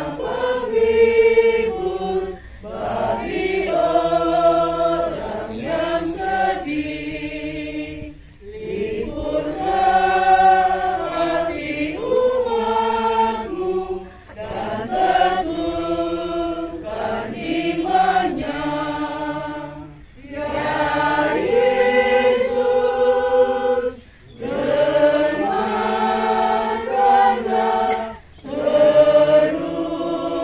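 A congregation singing together in a group, in phrases a few seconds long with short breaks for breath between them.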